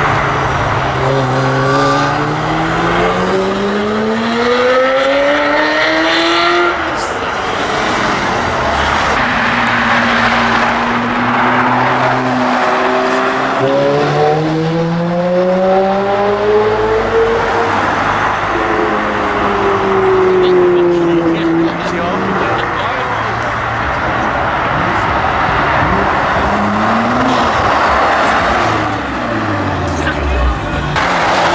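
Sports car engines accelerating hard one after another, over steady road noise. One engine note climbs long and steadily for the first seven seconds, another climbs from about thirteen to eighteen seconds, and a falling engine note follows.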